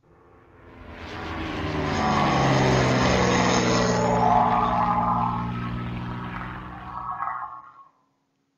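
Propeller airplane sound effect flying past: an engine drone that swells in over the first two seconds while dropping in pitch, holds steady, then fades and stops just before the end.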